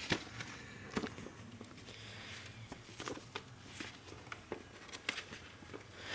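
Faint rustling of paper VHS inserts being handled as a fold-out insert is opened, with a few light scattered clicks.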